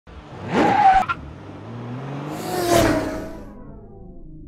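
Car sound effects for a logo intro: a short tyre squeal that rises, holds and cuts off with a click about a second in. Then a car whooshes past with a falling pitch and fades away.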